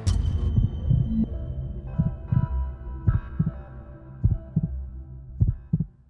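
Television station-ident sound design: a sharp hit, then deep bass thumps in pairs like a heartbeat over held synth tones.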